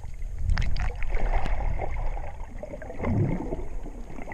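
Underwater recording from a camera carried by a swimming freediver: water rushing and gurgling against the camera with a low rumble and scattered sharp clicks.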